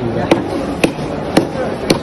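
Cleaver chopping fish on a stone counter: four sharp strokes at a steady pace, about two a second.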